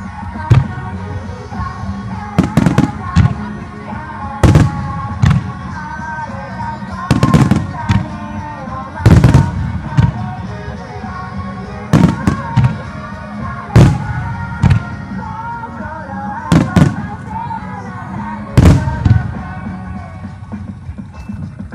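Aerial firework shells bursting, a sharp bang with a deep echoing boom every second or two, often two or three close together. Under them runs a loud music soundtrack with a sustained melody.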